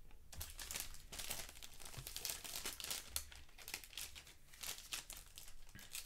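Thin plastic bag crinkling and rustling as hands handle it, in a continuous run of irregular crinkles.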